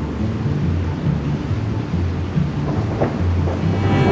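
Soundtrack music in a break between string passages: low pulsing bass under a steady rushing noise, with a brief swell near the end.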